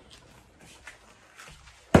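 Faint footsteps and shuffling across a kitchen floor, then one sharp knock just before the end.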